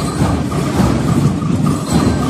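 School marching band (banda músico-marcial) playing: bass drums, snare drums and clashed cymbals keep a steady marching beat, with a short pitched note from the bell lyres repeating about three times a second.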